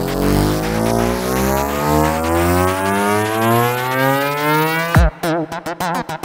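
Suomisaundi psytrance track in a breakdown: the beat drops out and a tone with many overtones rises steadily in pitch for about five seconds, then the beat cuts back in with choppy, stuttering hits.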